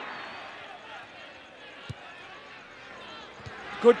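Football pitch-side ambience: faint shouts from players and a sparse crowd, with two dull thuds of the ball being kicked, one about two seconds in and a softer one near the end.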